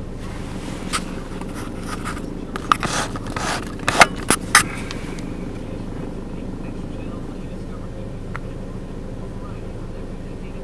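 Clicks and rustling from the camera being handled and zoomed in, a cluster of sharp clicks in the first half, over a steady low hum.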